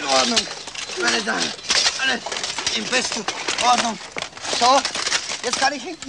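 Short wordless vocal sounds, rising and falling in pitch, amid a run of clicks and knocks.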